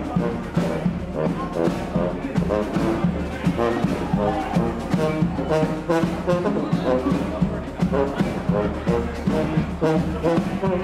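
Street brass band playing jazz, with a sousaphone bass line under the horns and a steady drum beat.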